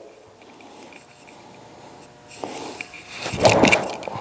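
A golf swing on an uphill lie: a quiet stretch, then a short rushing burst about three and a half seconds in as the club comes through and strikes the ball.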